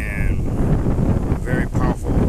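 Strong gusty wind buffeting the microphone, a loud, ragged low rumble throughout.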